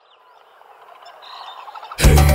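Jungle-ambience sound effect of birds chirping, fading in from silence and growing steadily louder.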